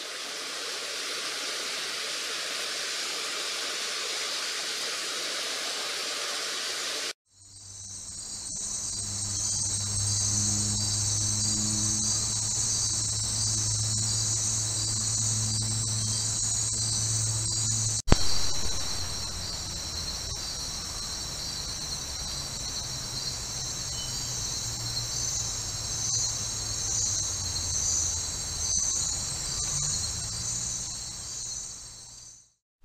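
Night insect chorus: a steady, high-pitched shrill trill over a low hum, picked up by a trail camera's microphone, with one sharp click partway through. Before it, about seven seconds of steady rushing noise that stops abruptly.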